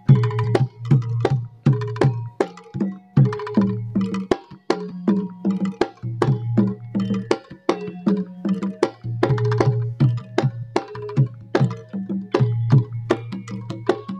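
Javanese jaran kepang percussion music: a fast, busy run of sharp drum and wood-like strikes over ringing low pitched tones.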